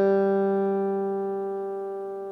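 A single open G string on a solid-mango steel-string acoustic guitar, plucked once and left ringing while it is checked against the guitar's built-in tuner. The note dies away slowly and steadily.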